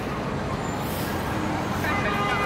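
City street traffic: a steady rumble of engines and road noise, with a pitched tone starting just before the end.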